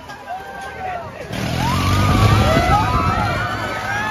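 Many riders on a fairground ride screaming and shouting together, building from a few voices to a loud peak about two seconds in, over a rushing noise from the ride's movement.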